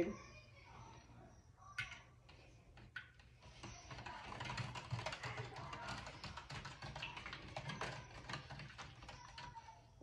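Spoon stirring salt into a cup of Kool-Aid, faint. A few separate clicks come first, then a fast run of small clicks and scrapes from about three and a half seconds in.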